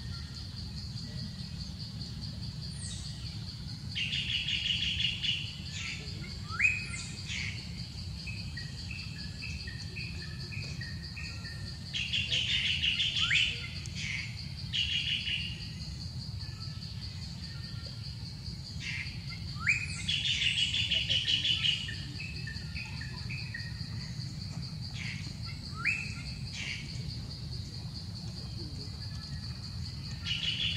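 A songbird singing in three bouts about eight seconds apart, each a run of rapid trills and sharp downward-sweeping whistles, with a lone note near the end, over a steady high insect drone.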